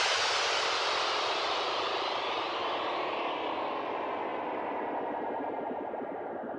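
The echoing tail of an effects-laden music track, left after the music cuts off: a long wash of sound that fades steadily and loses its treble as it dies away.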